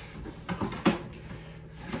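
Cardboard box of pancake mix being handled and tipped: a few short knocks and rustles, the sharpest just under a second in.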